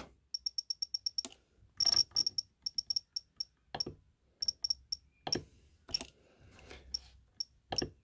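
Jeti DS-24 radio control transmitter giving short high key beeps in quick runs, about eight a second at first and then in smaller groups, as the cursor is stepped across its on-screen keyboard. Soft button clicks fall between the runs.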